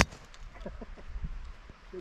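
A golf club striking a teed golf ball: one sharp crack right at the start, followed by faint speech.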